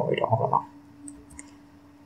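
Two light clicks of a computer mouse about a second in, over a faint steady hum.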